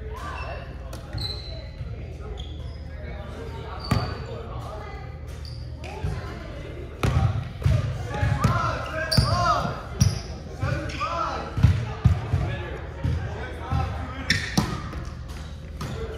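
Indoor volleyball play in an echoing gym: sharp thuds of the ball being struck, one about four seconds in and several more in the second half, with players shouting and calling out over a steady low hum.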